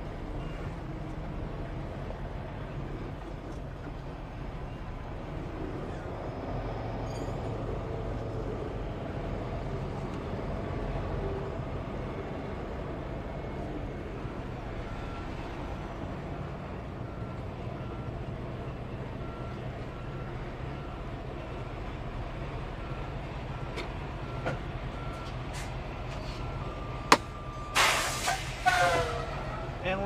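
Semi truck's diesel engine running slowly while it reverses, with the backup alarm beeping about once a second from about halfway. Near the end a sharp click and loud bursts of air hiss: the air parking brakes being set.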